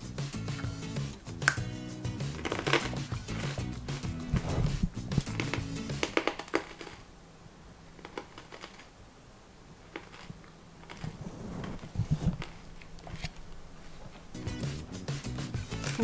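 Crunching of a thin, fry-shaped snack stick being bitten and chewed, over background music. The music stops about six seconds in, leaving quieter chewing with a few faint clicks.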